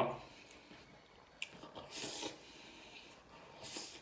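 A man slurping a big mouthful of spicy noodles: two short hissing slurps, about two seconds in and near the end, with a small click of chopsticks or lips before the first.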